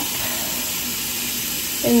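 Bathroom sink tap running in a steady stream, filling a small cup with water.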